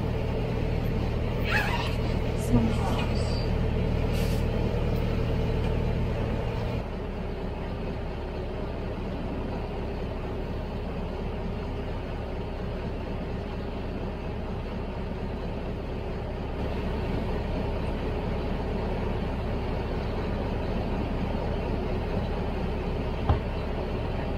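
A sailing yacht's inboard engine running steadily while the boat motors along. About seven seconds in, the sound drops to a quieter, even rumble.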